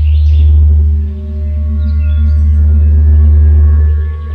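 Loud, steady deep electronic hum with faint ringing overtones and a few high warbling chirps at the start, dipping briefly about a second in: a film sound effect for an alarm going off from a post-like column.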